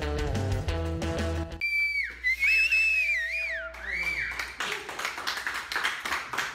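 Rock-and-roll music with guitar cuts off abruptly about a second and a half in. A loud, wavering, high whistle by a person follows for about two seconds, then hand clapping and voices.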